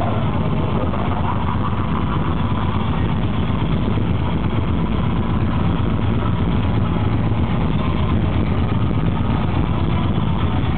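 Black metal band playing live, with distorted guitars and drums. The camera's microphone overloads, so it comes across as a dense, unbroken wall of sound.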